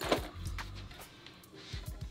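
A few light knocks and rustles as a hydrofoil front wing is pulled out of its elastic cover and handled, over faint background music.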